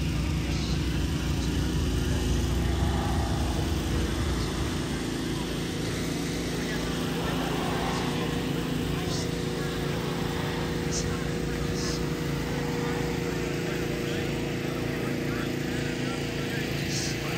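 Indistinct voices of people milling about, over a steady mechanical hum. A low rumble is strong for the first few seconds and then eases.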